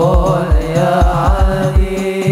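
Hadroh ensemble: male voices chanting an Arabic devotional song in a wavering melody over rebana frame drums beating a quick, steady rhythm.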